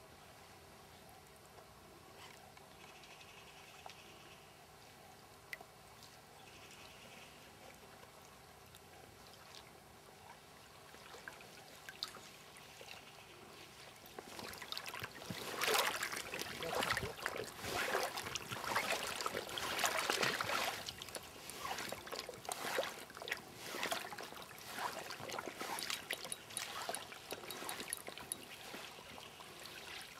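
Faint steady river background, then from about halfway through, loud irregular water splashing and sloshing as a landing net is worked in the shallow river around a hooked salmon.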